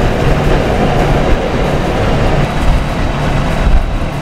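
Strong wind rumbling on the microphone over the low drone of a sailboat's inboard diesel engine, run while the anchor is being set and tested for dragging.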